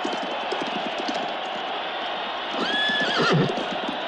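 Horses' hooves clattering in a quick, uneven run over a steady noisy background, with one horse whinnying loudly for about a second near the end.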